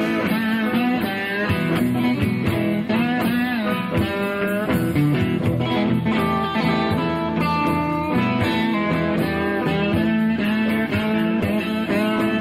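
Blues band playing an instrumental passage, an electric guitar lead with bent notes over bass and rhythm accompaniment.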